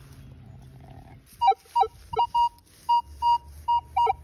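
Minelab Manticore metal detector giving a run of short high beeps, about two to three a second, as its coil passes over a target that reads 91. The beeps start about a second and a half in, and the first few are mixed with lower tones.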